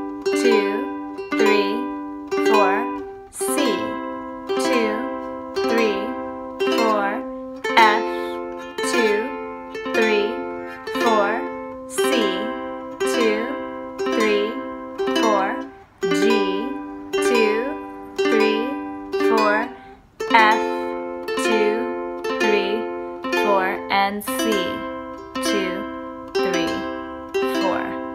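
Ukulele strummed in a steady beat, about one strum a second, changing chord every four strums through C, G and F.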